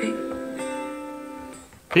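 Acoustic guitar strummed chords playing from a vinyl record through a small portable record player's speaker. The chord rings and fades steadily to near silence just before the end as the volume is turned down.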